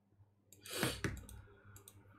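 A short, breathy exhale about half a second in, followed by a few light clicks.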